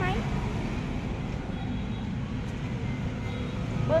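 Shibaura D28F compact tractor's four-cylinder diesel engine running steadily, a low, even rumble with no revving.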